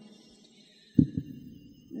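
A pause in chanting: near silence, then about halfway two low, dull thumps in quick succession, the first one louder.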